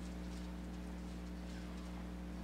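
Low, steady electrical hum under quiet room tone, with nothing else sounding.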